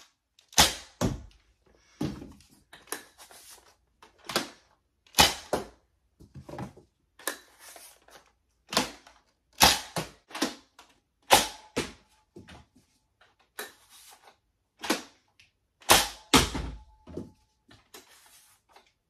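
Nerf N-Strike Blazin' Bow being shot repeatedly: the pull-back-and-release spring plunger firing its big foam arrows, with arrows smacking into the target and wall. It makes about twenty sharp thumps and smacks, often two in quick succession.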